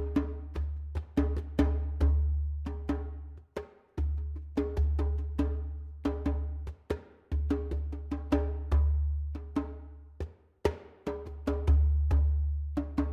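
Djembe played by hand in a free improvisation: deep bass strokes alternate with sharp, ringing higher strokes and slaps, several strokes a second in an uneven, shifting rhythm.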